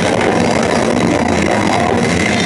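Metal band playing live at full volume: guitars and drums in a dense, unbroken wall of sound.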